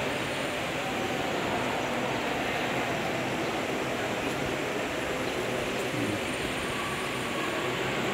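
Steady, even background noise of a large indoor hall, with no single sound standing out and no speech.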